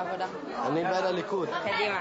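Speech only: a teenage girl talking, with other students chattering behind her.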